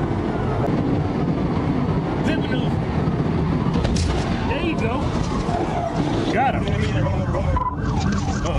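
Police cruiser's dashcam audio at highway speed: steady engine and road noise with a siren wailing up and down in the first few seconds, as the cruiser carries out a PIT maneuver on a fleeing car.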